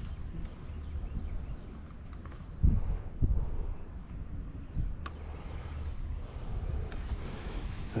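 Wind buffeting the microphone as a steady low rumble. There are two dull thumps between two and a half and three and a half seconds in, and a single sharp click about five seconds in.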